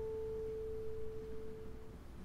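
A single classical guitar note, near pure in tone, rings on and slowly dies away, fading out near the end.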